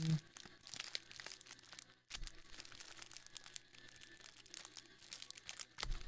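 Faint crinkling of cellophane trading-card pack wrappers being handled: a run of small crackles with a short lull about two seconds in and a sharper crackle near the end.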